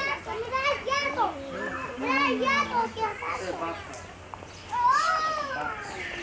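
Children's voices chattering and calling out, with one louder drawn-out call, rising then falling, about five seconds in.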